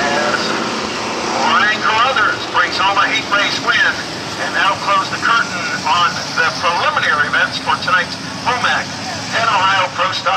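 Dirt-track Pro Stock race cars' engines running around the oval, a steady drone, with a man's voice talking over it.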